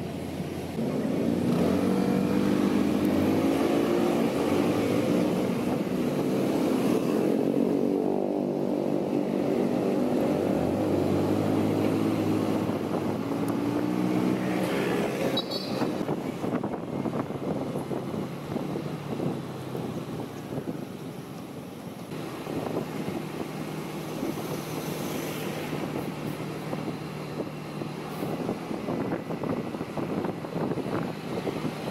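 Honda ADV 160 scooter's single-cylinder engine pulling away and accelerating through traffic, its pitch rising and falling over the first fifteen seconds or so. It then settles into a steadier cruise mixed with wind and road noise.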